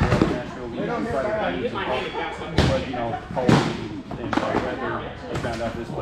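Foam-padded boffer weapons striking in sparring: several sharp thwacks, the loudest about two and a half and three and a half seconds in, over people talking in a large hall.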